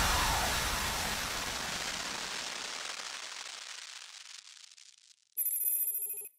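The music of the closing logo sting dies away as a reverberant wash with a falling whoosh at the start, fading out over about five seconds. Near the end comes a short, bright electronic ringing tone, under a second long, that cuts off suddenly.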